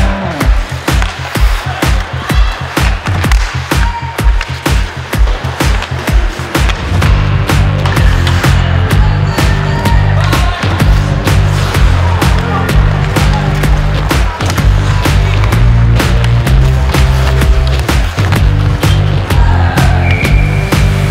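Background music with a steady beat; a heavy bass line comes in about seven seconds in.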